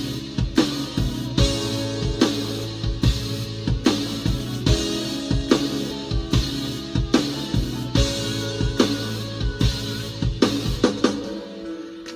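Acoustic drum kit played in a steady groove along with a band track of bass and guitar, with kick, snare and cymbal hits. Near the end the bass drops out and the drumming thins.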